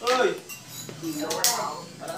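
Voices of people talking, with a single sharp click about one and a half seconds in.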